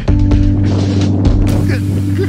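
Background music: held low notes begin just after the start, where the beat drops out.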